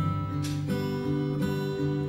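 Acoustic guitar strumming chords, with a new chord struck about half a second in.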